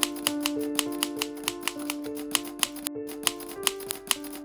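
Typewriter key strikes, about four a second with a short pause about three seconds in, over soft background music with held notes.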